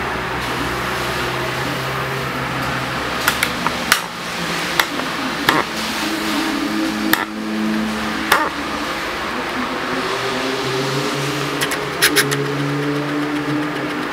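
A steady indoor hum with held low tones, broken by short, sharp clicks and taps scattered through, with a quick cluster of them near the end.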